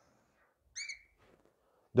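A whiteboard marker squeaks once against the board as a line is drawn: a single short, high-pitched squeak about three quarters of a second in, in otherwise near silence.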